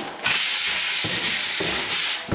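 A stiff-bristled hand brush scrubbing a car ramp. The scrubbing is steady and hissy, starts a moment in, and dips briefly about a second in.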